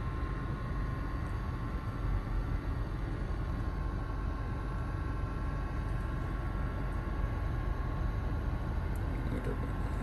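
Car engine idling with the air-conditioning fan running, heard inside the cabin as an even, unbroken hum.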